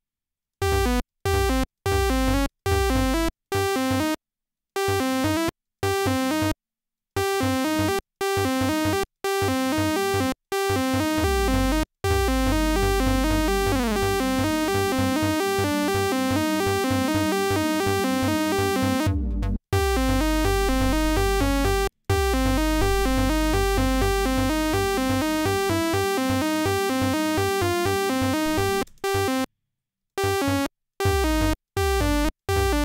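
Serum software synth playing a sawtooth wave whose pitch steps up and down in a fast repeating arpeggio pattern, drawn on an LFO sent to the oscillator's semitones. For the first twelve seconds it plays in short runs broken by brief gaps. After that it runs continuously with a deep bass note underneath, cutting out briefly twice.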